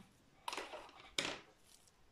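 Two faint, brief handling noises of small objects, the first about half a second in and the second a little over a second in, each fading quickly.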